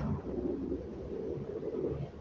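Low, steady rumble of a car interior while driving: road and engine noise heard from inside the cabin.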